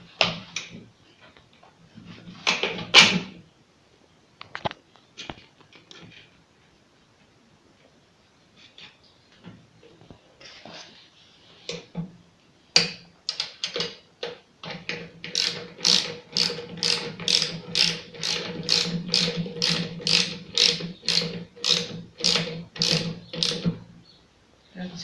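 Ratcheting spanner working a wheel nut onto a hub: a few scattered knocks and clicks at first, then, from a little past halfway, a steady run of sharp ratchet clicks, about two or three a second.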